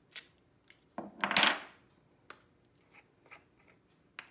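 Craft-desk handling sounds: light clicks and taps of a clear acrylic stamp block and supplies on the work surface, with one louder, short scraping rustle about a second in.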